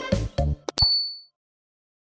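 Cartoon background music stops with a last couple of beats, then two quick clicks and a short, high bell ding: the sound effect of a subscribe button and notification bell being clicked.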